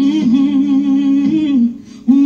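Gospel song playing, its singer holding a long wavering note that breaks off near the end.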